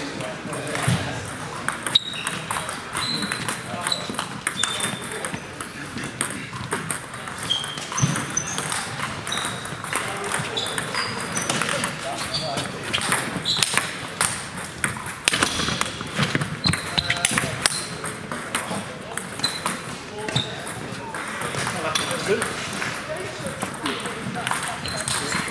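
Table tennis rallies: a plastic ball clicking off bats and the table in quick irregular runs, with the short high pings of balls from other tables, over a murmur of voices.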